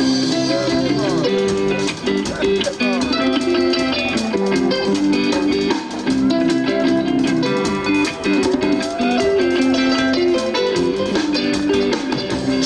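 Live rock band playing an instrumental passage led by acoustic and electric guitars over bass, with a few notes bent upward.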